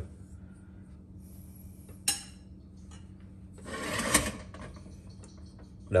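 A metal ladle clinks once against a stainless-steel stockpot about two seconds in, then scrapes briefly against metal around four seconds in.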